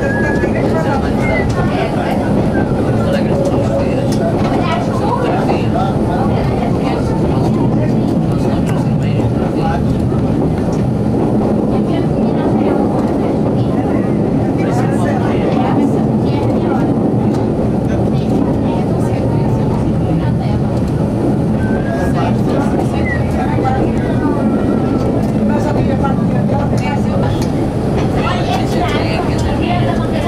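CP series 9500 diesel railcar running on metre-gauge track, heard from inside the front cab: a steady, loud mix of engine and wheel-on-rail noise with no pause or change.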